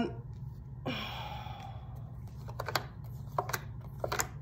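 Tarot cards being handled and laid down: a soft breath about a second in, then a few light card clicks in quick pairs in the second half.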